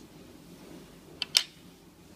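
Two small sharp clicks close together, the second louder, a little over a second in, from small metal and plastic N scale model locomotive tender parts being handled on a wooden table, over a faint steady room hum.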